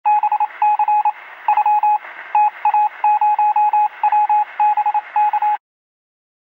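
Morse-code-style beeping: one steady tone keyed in rapid short and long pulses over a hiss of radio static. It cuts off suddenly near the end.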